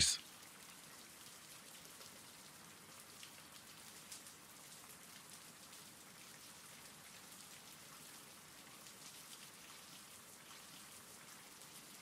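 Faint steady rain, a background rain-sound track, with a light patter of scattered drops.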